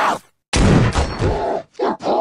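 A cartoon gunshot: a sudden loud bang about half a second in, heavy in the bass. It is followed near the end by a man's pained grunting cry.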